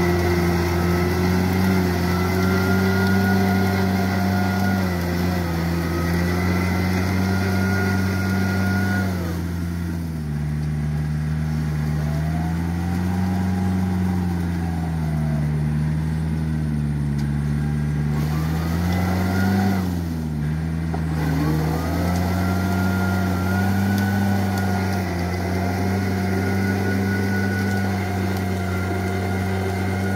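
Tractor's diesel engine running steadily while driving a rotary tiller through wet paddy mud. About nine seconds in the engine note drops lower and wavers up and down, then rises back to its steady pitch about twenty-one seconds in.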